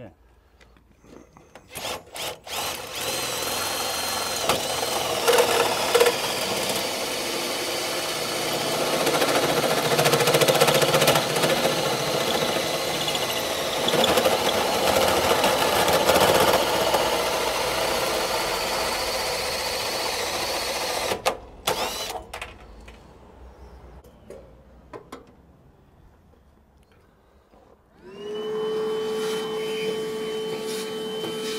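Cordless drill driving a 38 mm hole saw through the sheet-steel casing of a distribution board: a steady cutting grind for about eighteen seconds that then stops, with a few sharp clicks at either end. About two seconds before the end a vacuum cleaner starts up with a steady hum.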